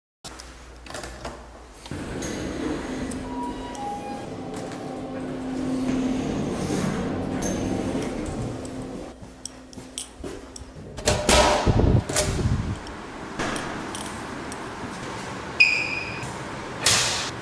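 Doors opening and closing and keys jangling, over a steady low hum. There are a few loud knocks about eleven seconds in and a short high beep near the end.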